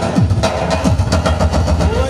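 Loud amplified folk dance music from a live wedding band, instrumental here, with a heavy bass and a steady, driving drum beat.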